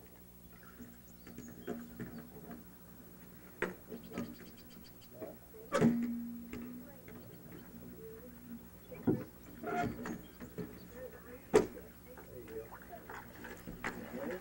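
A small sailboat's rudder being fitted at the stern: a handful of sharp knocks and clunks a few seconds apart, over a steady low hum and faint voices.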